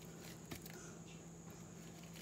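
A quiet room with a faint steady hum and a single soft click about half a second in, as a metal palette knife scoops up a small painted tile.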